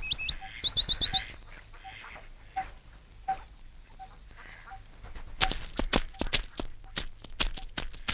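Birds chirping: quick rising chirps about a second in, over a faint short note repeating about every two-thirds of a second. In the second half comes a high thin whistle with a run of sharp clicks.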